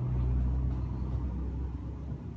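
A low, steady rumble with no clear strokes or clicks.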